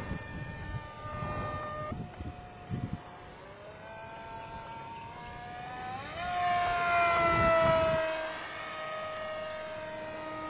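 Radio-controlled flying boat's electric motor and propeller whining in flight. The pitch steps up about two seconds in and climbs again about six seconds in as it speeds up. The sound is loudest for the next two seconds, then settles a little lower as it flies past.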